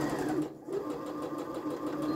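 Electronic domestic sewing machine stitching a seam with a fast, even run of needle strokes, stopping briefly about half a second in and then running on.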